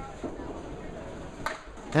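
Candlepin ball rolling down the lane amid the alley's room noise, then one sharp clack of pins about one and a half seconds in as it strikes the remaining pins and converts the spare.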